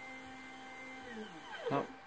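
Stepper motor on a Proxxon MF70 CNC conversion jogging the Z-axis up: a steady whine that drops in pitch as the motor slows and stops a little after a second in.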